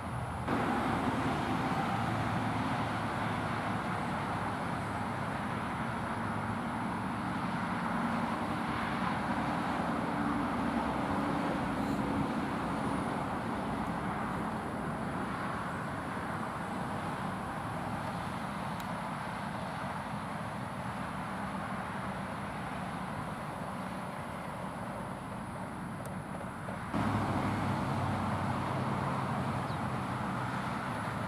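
Utility bucket truck engine running steadily to power the hydraulic boom, with the engine speed and level stepping up about half a second in and again near the end as the boom is worked.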